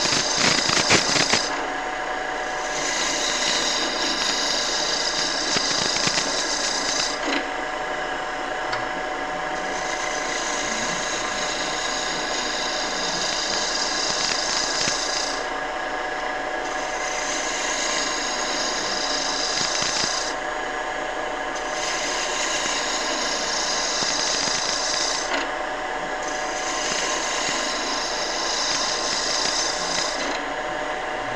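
Wood lathe running with a roughing gouge cutting into a spinning rolling-pin blank to taper it. A steady motor hum lies under a noisy shearing cut that comes in passes of several seconds with brief pauses between them, after a flurry of sharp clicks in the first second or so.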